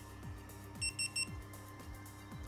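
Three quick, high-pitched electronic beeps about a second in from a GitUp Git2 action camera as it restarts at the end of its firmware update. Background music with a regular beat plays underneath.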